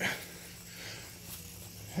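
Steady background hum and hiss in a pause between speech, with a short hiss at the very start.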